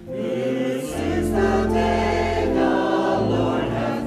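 Church choir singing a hymn together, entering just after the start over sustained low organ notes.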